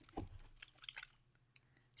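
A few faint clicks in the first second from the mixing ball rattling inside a Distress Mica Stain spray bottle as the shaking winds down. The ball is stirring the mica evenly into the solution.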